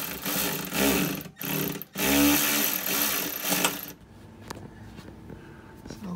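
Handheld power driver running in several bursts with its motor pitch rising and falling, driving the sheet metal screws into the catch-can mounting bracket. It stops about four seconds in, and a light click follows.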